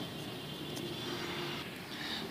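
Quiet room tone: a faint steady hum and hiss, with no distinct events.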